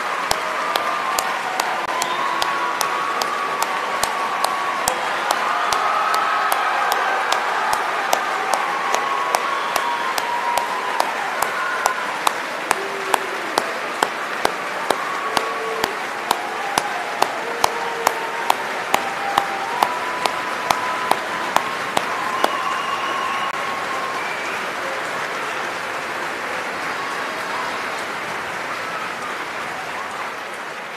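A large audience applauding at length, a dense steady clatter of many hands. Through the middle one pair of hands close to the microphone claps loud and regular, about twice a second, over the crowd, and the applause eases a little near the end.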